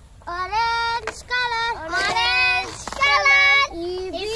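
A child singing a short phrase of four held notes, each lasting under a second, with brief breaks between them.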